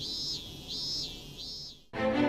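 Cicada calling in a run of even, high-pitched pulses, about one every 0.7 seconds, over faint background music. The call cuts off sharply near the end.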